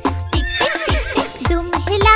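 Upbeat children's song backing music with a steady beat. A cartoon horse whinny sound effect comes in about half a second in and lasts under a second.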